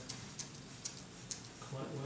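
Bristle brush dabbing oil paint onto a primed paper surface, applied with light pressure: faint, short ticks about twice a second.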